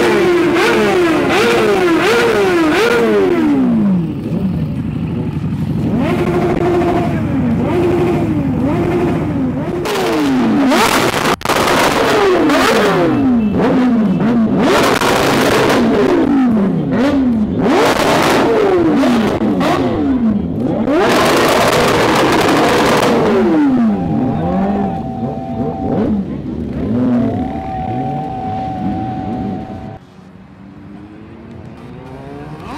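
Several superbike engines revved in turn: quick throttle blips that climb and fall in pitch, one after another, with a few longer, louder bursts at high revs.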